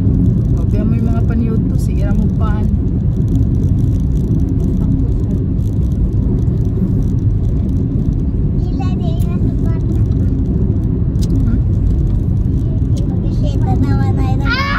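Steady low road and engine rumble inside a moving car's cabin, with brief high children's voices about a second in, again around nine seconds in and near the end.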